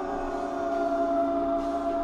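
Jazz-rock ensemble of brass, woodwind and electric piano holding a steady chord of several sustained notes.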